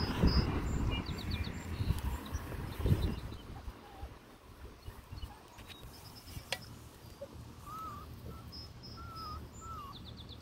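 Redbone Coonhound puppies scuffling together on grass, with rustling and soft knocks over the first three seconds, then quieter. Small birds chirp in the background throughout.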